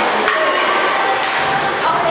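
Table-tennis ball clicking sharply a few times against paddles and table, over voices chattering in a large hall.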